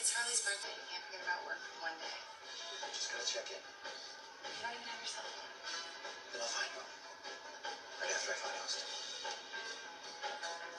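Cartoon soundtrack from a television: background music with characters' voices, heard through the TV's speaker.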